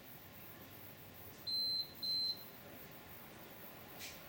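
An electronic device beeps twice, two short high-pitched tones about half a second apart near the middle, over faint background hiss.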